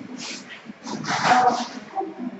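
Classroom bustle: short bursts of rustling from large paper sheets and people moving, with a brief laugh near the end.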